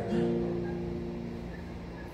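Acoustic guitar chord strummed once just after the start and left ringing, fading slowly.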